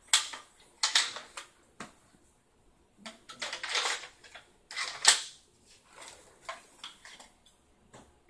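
Clicks and scrapes of a Classic Army M203 airsoft grenade launcher being handled and readied to fire, with a longer scrape a little after three seconds in and a sharp snap about five seconds in.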